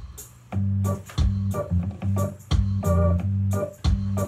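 Hammond M3 organ playing a jam over a drum beat: held bass notes under short, choppy chords, coming in about half a second in.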